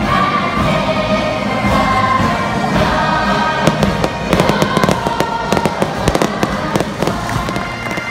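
Fireworks crackling and banging in quick, irregular succession from about halfway through, over ongoing music and crowd singing.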